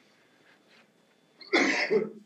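A short, loud cough about one and a half seconds in, after a near-silent pause.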